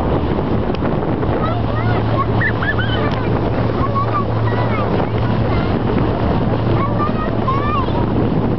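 Motorboat engine, a Correct Craft inboard, running at a steady cruising speed as a constant low drone, under the rush of wind across the microphone and water along the hull.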